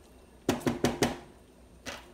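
A spatula knocked against the rim of a nonstick frying pan: four quick, sharp knocks about half a second in, then one lighter knock near the end.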